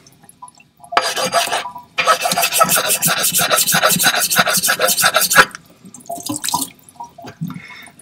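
Diamond lapping plate rasping along the edge of a Japanese natural whetstone (Nakayama kiita) to chamfer it: a short burst of rubbing about a second in, then quick, even back-and-forth strokes at about four a second for some three seconds, followed by a few scattered strokes.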